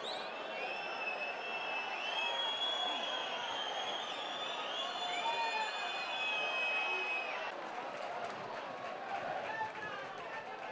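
Stadium football crowd, with many fans whistling: overlapping held and gliding whistles over a general crowd din. The whistling stops about seven and a half seconds in, leaving crowd noise with scattered claps.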